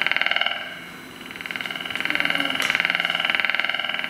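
Prepared guitar giving a rapidly pulsing, buzzing drone of several sustained high tones, fading about a second in and swelling back up.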